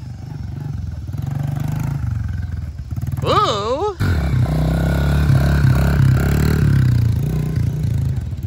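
Small Honda CRF dirt bike's single-cylinder four-stroke engine running as it is ridden, getting louder about halfway in. Just before that, a person whoops briefly.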